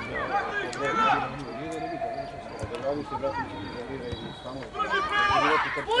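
Voices shouting across a football pitch, several calls overlapping, loudest about a second in and again near the end.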